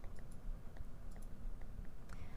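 A few faint, irregular light clicks and ticks over a low steady room hum.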